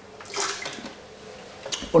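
A sip of red wine taken from a glass and slurped, with air drawn through the wine in the mouth as in tasting: a short hissing slurp about half a second in. A brief breathy hiss follows near the end, just before speech resumes.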